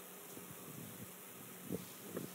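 Faint room tone during a pause: a steady low electrical hum with hiss from the microphone and sound system, and a faint short sound near the end.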